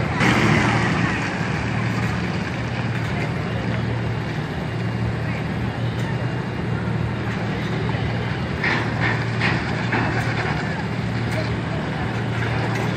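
Toyota SUV engine running steadily at low revs on an off-road obstacle ramp, a constant low hum, with people's voices in the background.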